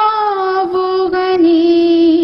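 A single high voice singing an Urdu devotional poem (a nasheed) unaccompanied, in long held notes that glide slowly and step down in pitch.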